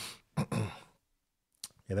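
A man clearing his throat, a short breathy sound that fades away, followed by a pause and a small mouth click just before he starts speaking again.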